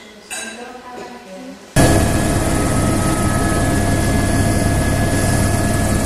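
Loud, steady aircraft engine noise heard from on board. It cuts in suddenly about two seconds in, after a quieter opening.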